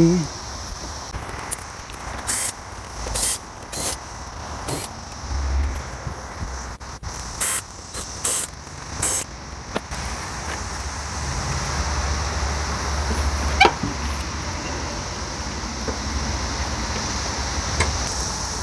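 Plastic cowl-panel clips being pried out with a small flathead screwdriver, giving a series of sharp clicks and pops, about seven of them between a couple of seconds in and the middle, then low rumbling handling noise as the cowl panel is worked loose. A steady high buzz of cicadas runs underneath.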